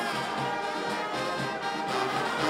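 Brass band playing, with sousaphones among the horns.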